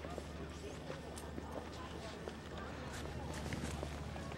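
Outdoor ambience of faint distant voices over a steady low rumble, with a few scattered sharp clicks.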